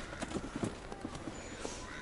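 Footsteps crunching in snow: a run of soft, uneven steps.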